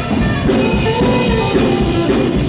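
Live gospel band playing an upbeat instrumental hymn: electric guitar, bass guitar, piano and drum kit together over a steady drum beat.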